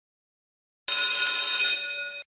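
Bell-ring sound effect for the notification-bell prompt: a bright ring of several steady tones that starts suddenly about a second in, then fades and stops.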